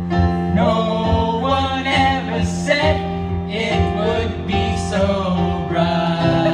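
Live band song: a man singing into a microphone over acoustic guitar and keyboard, with long held low notes beneath the melody.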